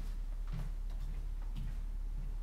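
Two soft footsteps, about a second apart, over a steady low electrical hum.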